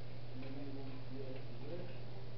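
Faint, distant speech in a room, too indistinct to make out, over a steady low hum.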